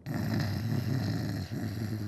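A puppet character snoring as he dozes off: a long, low, rough snore, a short break about one and a half seconds in, then a second, shorter snore.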